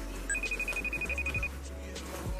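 Smartphone ringing with an incoming FaceTime call: a rapid high-pitched trill of beeps, about eleven a second, lasting about a second, over background music.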